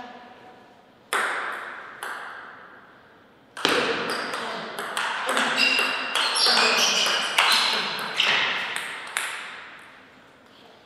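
Table tennis ball clicks: a few single bounces in the first two seconds, then from about three and a half seconds a fast rally of bat hits and table bounces, each click echoing in the hall, which stops about nine seconds in.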